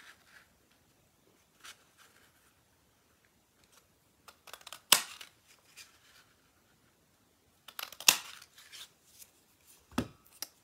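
Craft leaf punch snapping through watercolor paper: two sharp clicks about three seconds apart, with fainter ticks and paper handling between.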